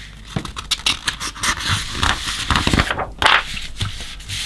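Paper pages of a printed instruction booklet rustling and crinkling under the hands, with a louder swish a little after three seconds as a page is turned over.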